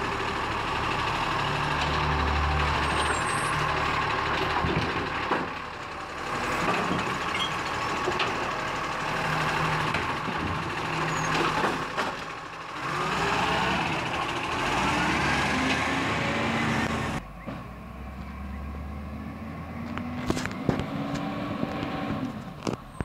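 Side-loader garbage truck working a row of wheelie bins: the engine runs and revs as the hydraulic arm lifts and tips bins, with knocks and bangs of bins and metal. About 17 seconds in, the sound drops suddenly to a quieter, more distant truck engine rising in pitch, with a few sharp clicks.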